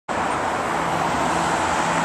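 Steady city traffic noise: a continuous even rumble and hiss of passing road vehicles, with a faint low hum.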